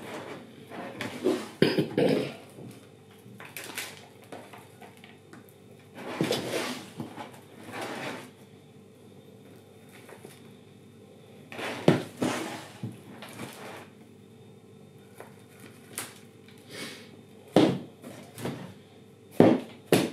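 Black plastic plant pots and potting compost being handled on a tabletop: a series of separate knocks, taps and scraping rustles with quiet gaps between, as a tomato seedling is moved into a deeper pot and settled with compost.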